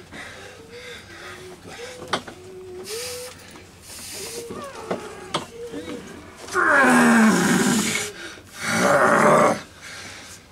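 A man roaring with effort while straining in an arm-wrestling match: a long, loud yell about six and a half seconds in that falls in pitch, then a second, shorter yell about a second later.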